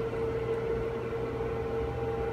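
Steady single-pitched audio test tone, the tone modulating the radio's AM carrier as the modulation level is brought up, over a steady background hum.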